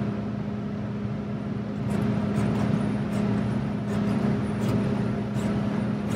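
John Deere 70 Series combine running at high idle, heard from inside the cab as a steady low hum that swells slightly about two seconds in, while the feeder house is lowered hydraulically during header calibration. A few faint clicks sit over the hum.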